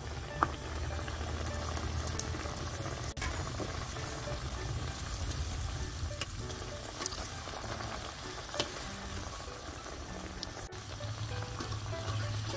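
Nimki dough pieces deep-frying in hot oil in a steel kadai, a steady sizzle and bubbling of the oil as they cook. A few short clicks sound over it, the loudest about half a second in.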